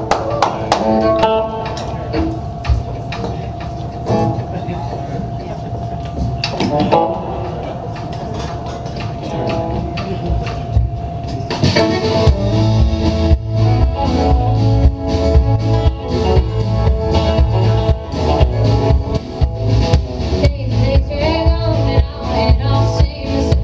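Live alt-country band with fiddle opening a song: a long held note over light guitar plucking, then drums and bass come in about twelve seconds in with a steady beat under fiddle and guitars.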